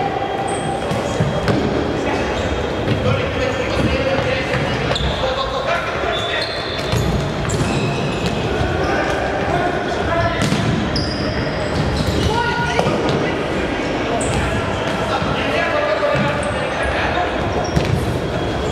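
Live futsal play on a wooden court in a large, echoing sports hall: players calling out, the ball thudding off feet and the floor, and short high squeaks from shoes.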